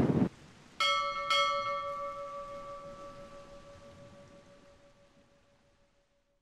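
A bell struck twice, about half a second apart, its ringing tone fading away over about four seconds.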